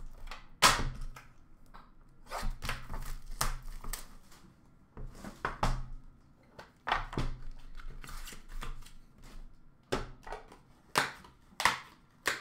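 Hands opening a sealed hockey card box: a string of irregular clicks, knocks and rustles from the box, its lid and packaging being handled on a counter.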